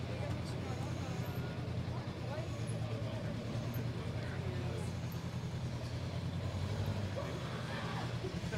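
Honda CB500F's parallel-twin engine running steadily at low revs as the motorcycle rolls at walking pace, with the chatter of people close by.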